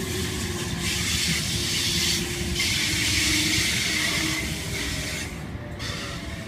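H-set OSCAR double-deck electric train rolling slowly into the platform as it comes in to stop: a steady rushing hiss with a faint low hum underneath. The hiss drops away about five and a half seconds in as the train slows.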